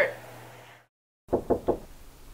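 A spoken word trails off, the sound drops to dead silence for a moment, then three quick knocks on a door come close together.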